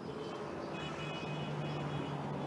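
Outdoor street background on a live field reporter's microphone: a steady low hum of traffic and a running vehicle engine, with faint high tones coming and going about a second in.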